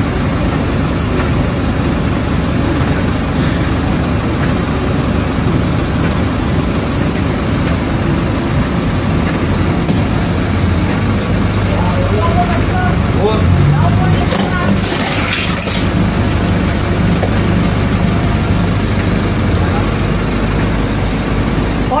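Bus engine idling steadily, heard from inside the bus with its door open. A brief hiss cuts in about fifteen seconds in.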